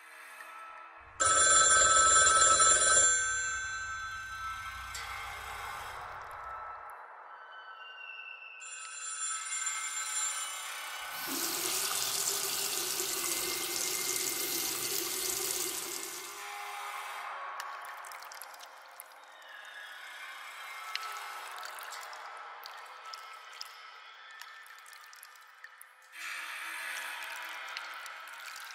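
A run of eerie sound effects over quiet ambient music: a telephone bell rings loudly about a second in, and a burst of running water, like a tap, comes in the middle for about five seconds. Fainter sounds come and go between them.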